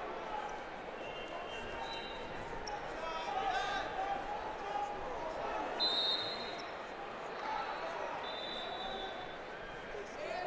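Wrestling-tournament hall ambience: background voices of coaches and spectators, with short high squeaks and a few dull thuds from the mat.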